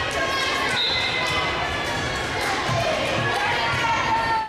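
A ball bouncing on a gym floor amid the voices of players and spectators at a volleyball match.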